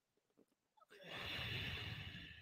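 Near silence, then about a second in a long, audible breath, hissing steadily for about a second and a half: a strong, steady yoga breath.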